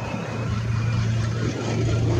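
A steady low hum over a faint rushing background, like a motor vehicle engine running, growing slightly louder near the end.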